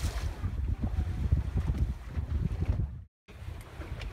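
Wind buffeting the microphone over the wash of sea water along a small sailboat's hull, a gusty low rumble. The sound cuts out for a moment about three seconds in.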